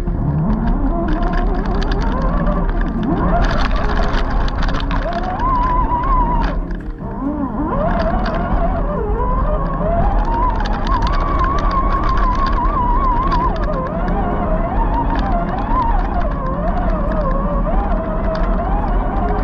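RC scale crawler's electric motor and gears whining, the pitch rising and falling as the throttle changes, over a steady low rumble. Tyres crunch and click on loose rock.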